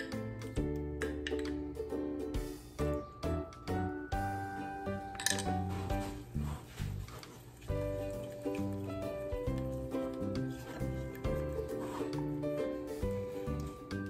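Instrumental background music: steady sustained notes over a regular low beat. A single short clink comes about five seconds in.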